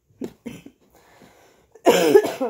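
A woman's brief vocal sound, then near the end a sudden harsh cough into her hand; she puts her worsening cough down to getting over a cold.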